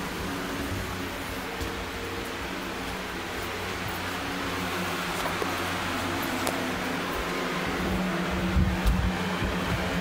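A steady hum made of several held low tones over a noisy hiss, with a few low bumps and rumbles about eight and a half seconds in.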